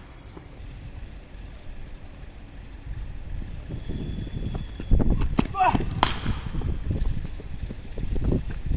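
A single sharp crack of a cricket ball struck by a bat, about six seconds in, just after a short gliding call. Under it is a low rumble of wind buffeting the microphone, building through the second half.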